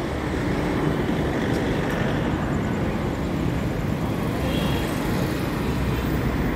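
Steady road traffic noise of cars and motorbikes passing on a busy street, a constant rumble.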